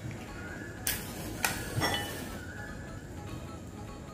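A match struck on the side of its matchbox: one sharp scrape about a second in, then two shorter scratches, over quiet background music.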